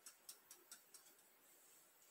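Near silence, with about five faint light clicks in the first second from kitchen utensils being handled on the counter.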